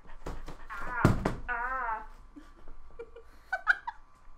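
A sharp knock about a second in, followed by a drawn-out, wavering high vocal sound lasting about half a second, and a few short voiced squeaks near the end.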